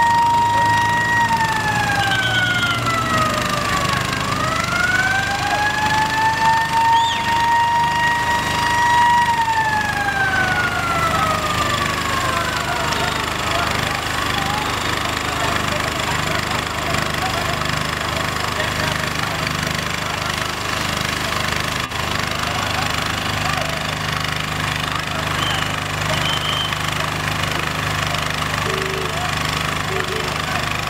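Emergency vehicle siren wailing: it holds, falls, climbs back, holds again, then falls away and stops about 13 seconds in. After that there is a steady mix of street noise and voices, with a low engine hum from about two-thirds of the way through.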